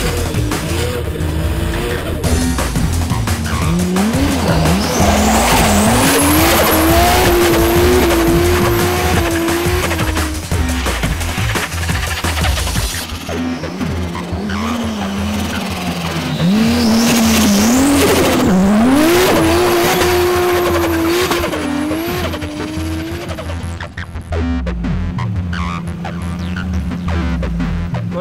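Toyota Supra drift car's engine revving hard, its pitch climbing and dropping again and again as the car slides sideways on snow with the rear wheels spinning.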